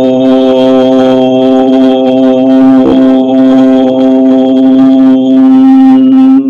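A loud, steady musical drone: one held pitch with rich overtones, unchanging throughout, with a faint click about three seconds in.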